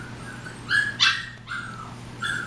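Young puppies yipping: two short, high yips close together about a second in, then a fainter one.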